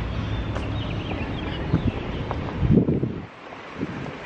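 Wind buffeting a handheld camera's microphone, a low rumble with a few light knocks, dropping away suddenly about three seconds in.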